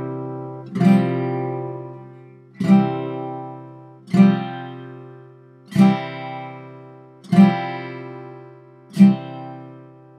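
Acoustic guitar strummed without a pick on a variation of an open C chord, with the pinky added on the fourth string. There are six strums about a second and a half apart, each left to ring and fade before the next.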